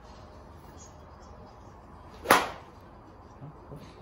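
Golf iron striking a ball off a driving-range hitting mat: a single sharp crack about two seconds in, with a brief tail.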